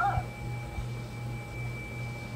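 A singing bowl ringing on after being struck, two steady tones, one high and one lower. A young child's brief squeal sounds at the very start.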